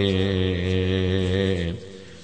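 A man's voice intoning one long held note in a chanted Islamic supplication, steady with a slight waver, breaking off shortly before the end.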